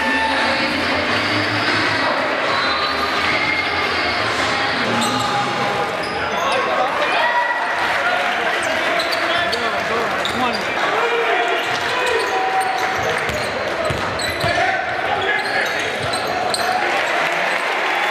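Crowd chatter in a gymnasium with a basketball bouncing on the hardwood court during play, echoing in the hall.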